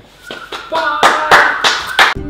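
A run of hand claps, about three a second, with a short stretch of voice over them, getting louder about a second in.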